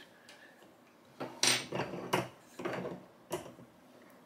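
Irregular metal clicks and clunks from a Lee Classic Turret reloading press being worked by hand, about half a dozen in all after a short quiet start, the sharpest about a second and a half in.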